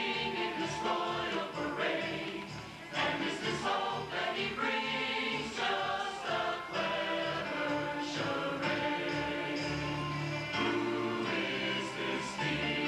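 A mixed church choir singing a cantata number, many voices together in sustained chords, with a short break between phrases about three seconds in.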